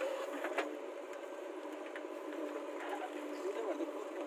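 Diesel engines of a backhoe loader and a tractor running steadily, with one sharp knock about half a second in.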